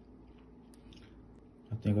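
Near silence: faint room tone with a couple of soft clicks, then a voice starts speaking near the end.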